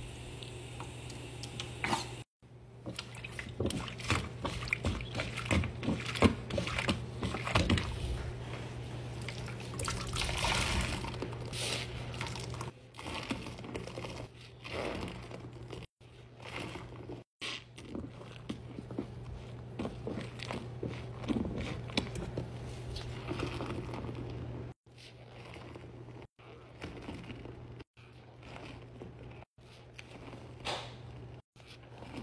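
A soapy scrub sponge being squeezed and worked in a sink of water: irregular squelching, foam crackling and dripping over a steady low hum. The sound cuts out briefly several times.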